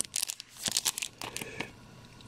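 Bagged comic books being flipped one after another by hand, their plastic sleeves crinkling in a run of short, sharp crackles that thin out near the end.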